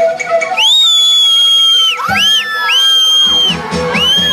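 Live concert music with a crowd cheering, topped by several long, high whistles that slide up, hold and drop away, overlapping in the middle.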